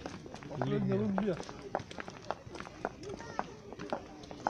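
Footsteps on a paved walkway, heard as a string of short sharp steps, with a person's voice speaking briefly about a second in and again just past three seconds.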